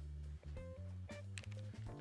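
Soft background music of held notes over a steady low bass line.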